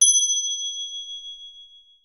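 A single high bell ding sound effect, struck once and ringing out, fading away over about two seconds: the notification-bell cue that follows a call to press the subscribe bell.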